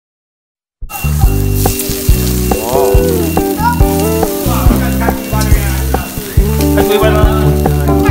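Pork belly and prawns sizzling over a charcoal grill, heard together with pop music that starts abruptly about a second in. The music carries a steady bass line and changing chords under the hiss of the grill.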